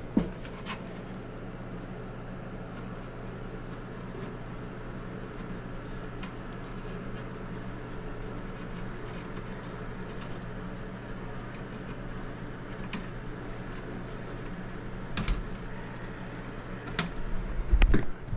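A steady low electrical hum from the air handler's wiring compartment, with a few faint clicks of hands handling and wrapping wires, about a second in and twice near the end.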